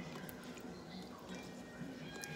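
Faint swishing of a hand stirring raw long-grain white rice in a glass bowl of water, rinsing it.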